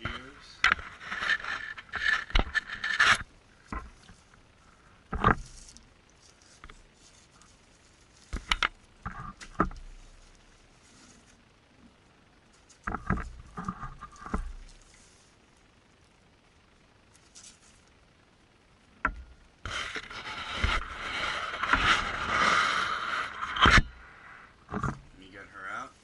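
Rustling and crinkling of a cloth reptile shipping bag and box packing being handled and opened. It comes in irregular bursts with a few sharp knocks, and the longest, loudest stretch of rustling is near the end.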